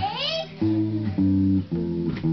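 Electric bass guitar played unaccompanied: a run of separate held notes, each starting sharply, a new one about every half second. A short high voice slides up and down at the very start.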